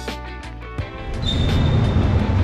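Background music, guitar-led, that breaks off about a second in, giving way to a steady low rumbling noise.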